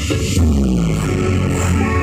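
Bass-heavy electronic music played loud through a truck-mounted stack of planar subwoofer cabinets. About half a second in, a deep sustained bass comes in under a tone that slides downward.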